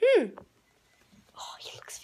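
A child's short high-pitched vocal sound that rises and then falls in pitch, followed near the end by a moment of whispering.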